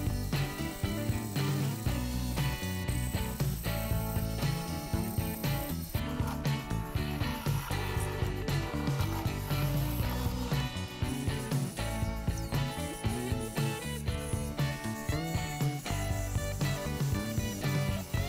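Instrumental background music with a steady beat.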